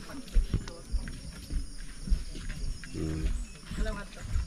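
Irregular low thumps and rumble, with a short low voice-like sound about three seconds in.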